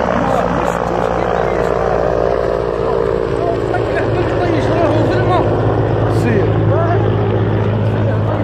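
A helicopter's engine and rotor running steadily, with people's voices talking and calling over it.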